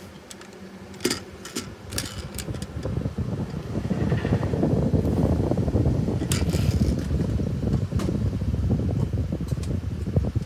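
Handling noise from a die-cast toy double-decker bus being turned over and moved about on a desk mat: a few light clicks, then a loud rumbling scrape from about three seconds in.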